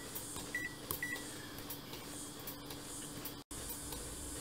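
Two short, high key-press beeps from a Konica Minolta bizhub C353 copier's touchscreen, about half a second apart, over a low steady hum.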